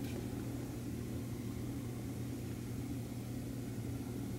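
Steady low mechanical hum made of a few fixed low tones, unchanging throughout.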